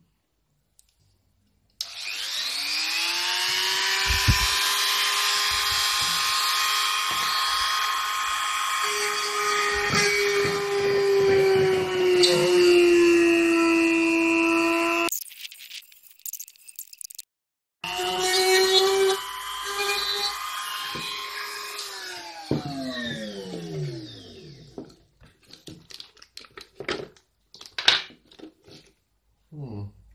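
A handheld rotary tool spins up with a rising whine and runs steadily, its pitch sagging slightly as it cuts a hole in an ABS plastic project box. It stops about halfway through, starts again a few seconds later, and winds down with a falling whine. A few light handling clicks follow.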